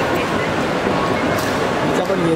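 Indistinct voices and steady hubbub of a crowd in a large airport terminal hall.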